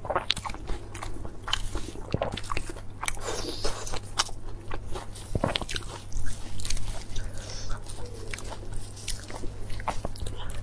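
Crisp leaf lettuce crinkling and crunching as gloved hands fold it into a wrap around saucy braised pork belly, a run of irregular crackles, with some chewing mixed in.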